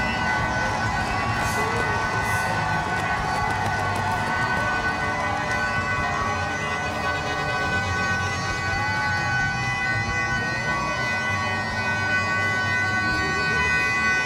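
Finish-line crowd noise under a steady droning sound made of several held pitches that do not rise or fall.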